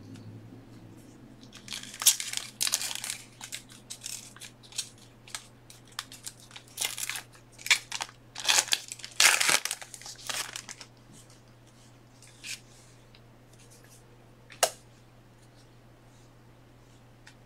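Plastic packaging crinkling and tearing in a dense run of irregular bursts, then a single sharp click near the end, over a steady low hum.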